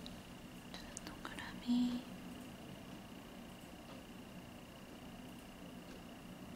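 Quiet room with a faint steady high-pitched whine, a few light clicks, and one brief soft whispered or breathy vocal sound just under two seconds in.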